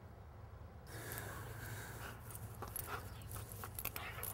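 Faint panting of a dog, with a few light clicks.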